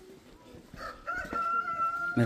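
An animal's long call held on one steady pitch, starting about a second in.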